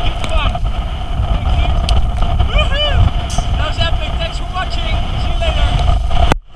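Wind buffeting the microphone over the steady drone of a motorboat's engine, with people laughing and talking.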